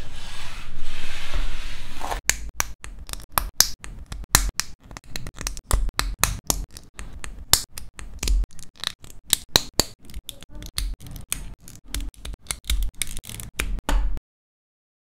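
A hand sweeps small plastic sprue scraps across a desk mat for about two seconds. Then comes a fast run of sharp plastic clicks and snaps, several a second, as the parts of a bootleg WarGreymon Amplified model kit are pressed together.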